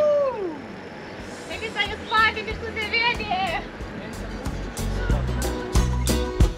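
People's voices calling out, first one long call falling in pitch and then a few short shouts, before background music with a steady beat comes in about four and a half seconds in.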